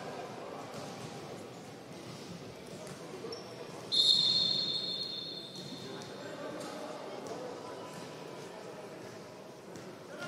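Crowd murmur and scattered voices in a futsal hall during a stoppage. About four seconds in, a sharp, shrill whistle blast cuts in loudly and then trails away over a couple of seconds.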